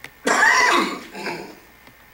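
A man coughing into his hand: one loud cough about a quarter second in, then a fainter one.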